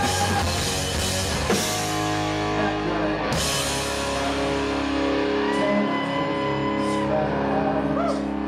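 Live rock band playing a slow passage of held notes on guitars, with drums and a cymbal crash about three seconds in.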